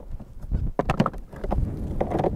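Frozen handheld two-way radios knocking and clacking against each other and the cooler as they are lifted out of dry ice: a quick cluster of sharp knocks about half a second to a second in, over a low wind rumble on the microphone.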